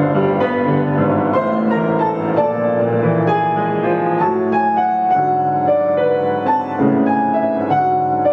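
Baritone saxophone and grand piano playing a classical piece together: a steady run of piano notes under held low saxophone tones, with no break.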